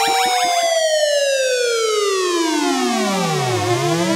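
Electronic music with a siren-like synthesizer tone that glides steadily down in pitch, bottoming out near the end and turning back up. The pulsing beat under it stops about a second in.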